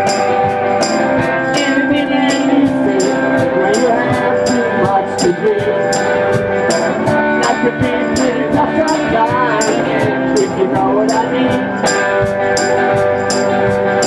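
Live blues band playing an instrumental break with no singing: sustained chords and bass under a lead line of bending notes, over a steady high percussion beat about twice a second.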